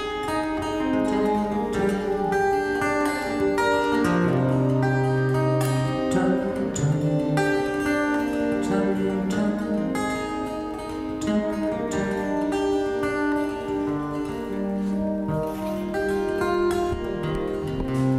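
Two acoustic guitars playing together, a large-bodied one and a smaller-bodied one, plucked notes ringing over held bass notes in an instrumental passage.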